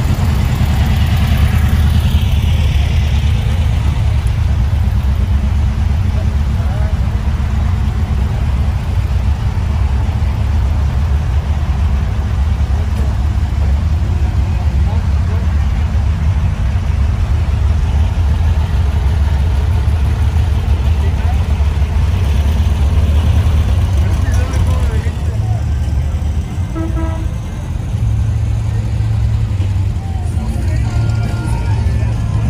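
A vehicle engine running steadily, a low rumble throughout, with voices in the background and a few short tones near the end.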